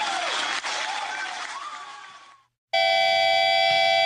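A noisy background with a few wavering tones fades out to silence about two and a half seconds in. Then a sustained ringing of held electric-guitar tones starts abruptly, opening a hardcore punk track.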